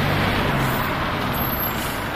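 A car's engine running, a steady low hum under a noisy hiss.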